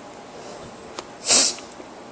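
A single short, sharp burst of breath from a person, a little over a second in, over quiet room tone.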